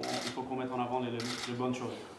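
A man speaking at moderate level, his words not picked up by the transcript.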